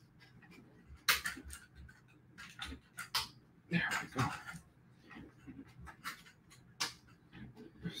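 Scattered clicks, knocks and rustles of the overhead camera and its mount being handled and repositioned over a sketchbook.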